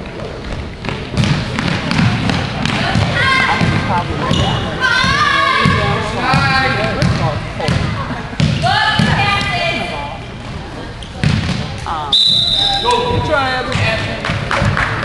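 A basketball bouncing on a hardwood gym floor, with thuds of play, amid spectators' voices calling out. Near the end, a steady high whistle tone sounds for about a second.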